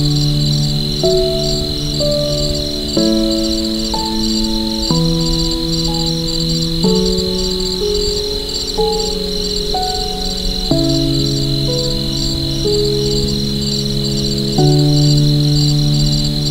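Soft piano playing slow, sustained chords, a new chord every few seconds, over a continuous high, rapidly pulsing chorus of crickets.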